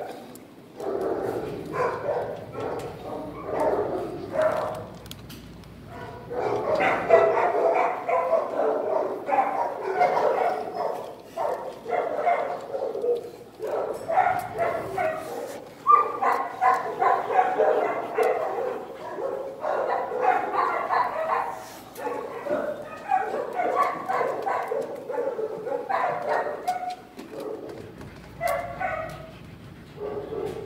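Dogs barking in a shelter kennel, mixed with a person's voice talking.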